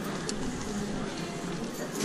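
Pedestrian street ambience: passers-by talking close by, with a single short sharp click about a third of a second in.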